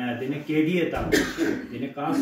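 A man speaking, broken about a second in by a short throat clearing.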